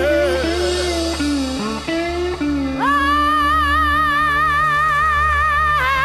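Electric blues band playing: a lead guitar bends notes, then about three seconds in holds one long note with vibrato, over a steady low sustained backing.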